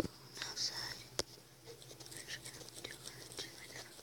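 Faint whispering in a small room over a steady low hum, with a sharp click at the very start and another about a second in.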